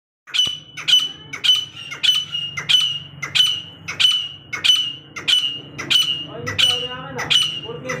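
Female grey francolin calling: a sharp, high note repeated evenly about one and a half times a second, a dozen calls in all.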